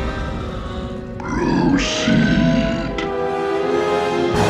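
Dramatic orchestral film-trailer music, with a deep, growling roar beginning about a second in and lasting about a second and a half.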